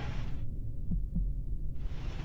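Low steady rumble with two soft thumps about a second in, in the quiet stretch of a radio voice recording between bursts of radio static. The tail of a static burst fades out in the first half second.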